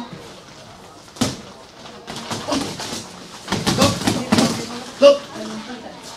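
Boxing sparring: gloved punches landing sharply, one about a second in and a quick flurry of several in the middle. A short loud vocal grunt or call comes near the end.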